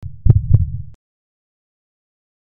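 Deep edited sound-effect hit: two heavy low thumps about a quarter second apart over a short rumble, cut off abruptly after about a second.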